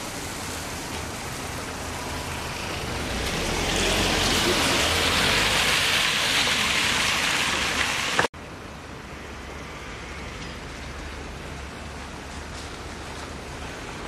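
Road traffic noise that swells for about four seconds in the middle as a vehicle passes. An edit then cuts it off abruptly, leaving a quieter, even hiss.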